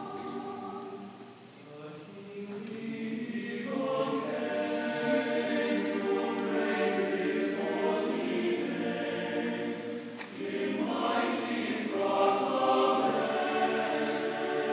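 Mixed choir of men's and women's voices singing sustained chords. There is a phrase break about a second and a half in, and a short dip about ten seconds in, before the singing swells again.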